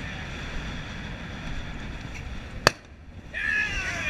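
Wind rushing over the microphone of a camera on a sailboat under way, a steady low rumble. About two and a half seconds in there is a single sharp click, followed by a brief quieter gap and then voices near the end.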